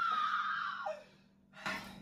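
A woman's high-pitched squeal of excitement: one long held note that trails off about a second in, followed by a faint brief noise near the end.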